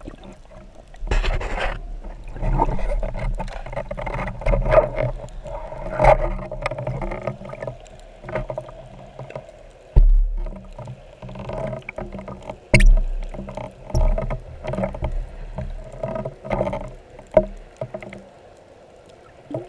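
Underwater water noise picked up by a camera on a speargun as a spearfisher swims up to the surface, with irregular knocks and thumps and a low rumble; the loudest thumps come about ten and thirteen seconds in.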